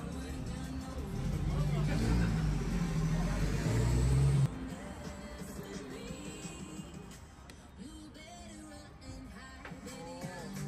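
Loud motor-vehicle traffic going by close to an outdoor street table: a low engine rumble with a rising hiss builds for a few seconds and then cuts off abruptly about four and a half seconds in.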